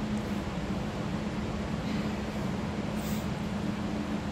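Steady hum and rushing air of a running electric fan. A soft swish comes about halfway through, and a brief high hiss a little after three seconds.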